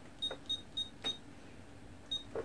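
Verifone VX 820 PIN pad beeping four times as PIN digits are keyed in: short, high beeps about a quarter second apart, each with a faint key click.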